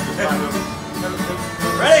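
Twelve-string acoustic guitar being strummed, keeping a steady chord accompaniment going.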